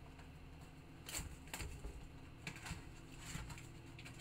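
Topps Triple Threads trading cards being handled and sorted by hand: a few soft, irregular clicks and rustles as the cards slide against one another.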